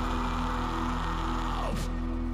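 Metalcore song playing: a dense, sustained wall of distorted guitar and held chords, with a brief sweep near the end as the heavy sound gives way to softer, cleaner notes.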